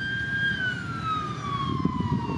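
A lifeguard emergency vehicle's siren wailing: one long tone that holds steady, then slowly falls in pitch through the second half.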